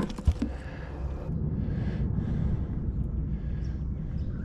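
A single knock just after the start, then a steady low rumble of outdoor noise, such as wind on the microphone.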